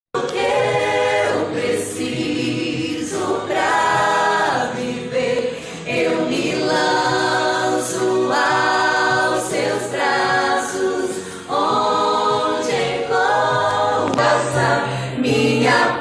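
Small church choir singing a worship song together in sustained phrases of one to two seconds, with short breaths between them.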